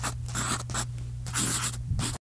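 Chalk scratching on a chalkboard in about five quick strokes, over a steady low hum.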